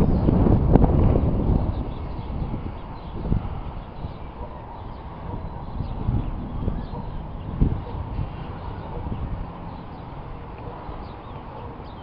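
Wind buffeting the camera's microphone, a heavy low rumble for the first couple of seconds that then settles to a lighter, steady rush with a few soft knocks.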